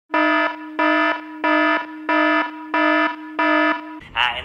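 Smartphone emergency alert tone for an extreme alert, a National Weather Service tornado warning: six loud pitched beeps in a steady rhythm, about one and a half a second.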